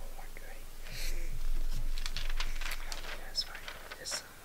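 Soft whispering, with a crackly run of small clicks and crinkles from about a second in, as from paper catalog pages being handled.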